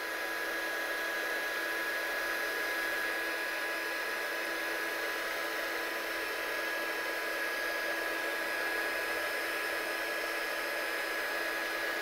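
Embossing heat gun running steadily: a constant rush of blown air with a steady whine of a few fixed pitches. It is melting clear embossing powder on a die-cut sentiment to a glossy finish.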